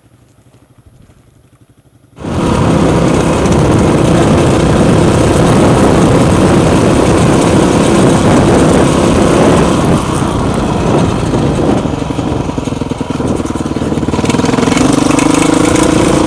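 Honda CRF dirt bike engine riding under way, coming in suddenly and loudly about two seconds in after a quiet start, with wind rush on the helmet-camera microphone. The engine pitch rises near the end.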